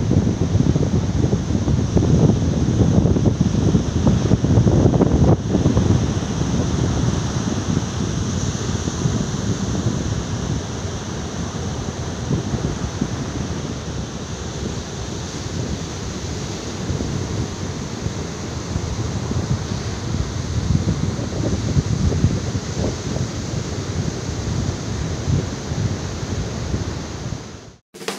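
Rough sea surf breaking and washing up a sandy beach, with wind buffeting the microphone. It is louder over the first six seconds, then steadies.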